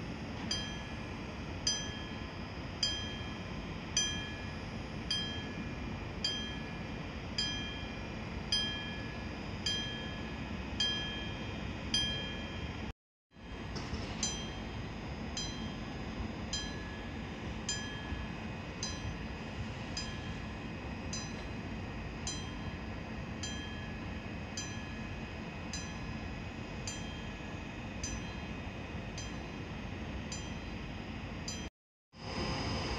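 A bell-like signal dinging steadily, about one stroke a second, each ring dying away quickly, over a steady low hum. The dings fade after a brief break in the sound about 13 seconds in.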